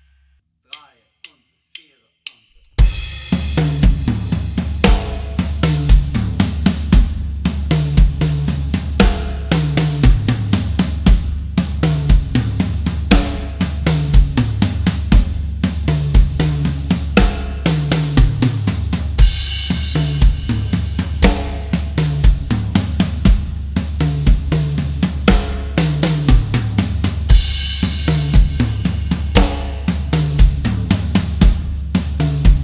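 Four evenly spaced count-in clicks, then a full drum kit playing a groove. A steady bass-drum pulse runs under snare strokes and tom runs that fall from the rack toms to the floor tom, repeating about every two seconds. Cymbal crashes ring out about two-thirds of the way through and again near the end.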